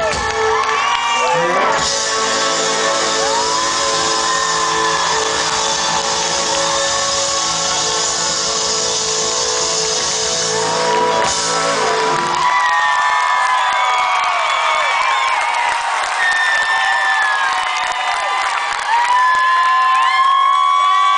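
Rock band ringing out a long final chord while the crowd shouts and whoops over it; about twelve seconds in the band stops and the crowd goes on cheering and whooping.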